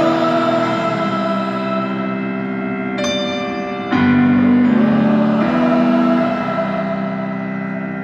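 Live concert music: sustained piano chords ringing and slowly fading, with a new chord struck about three seconds in and a louder one about four seconds in.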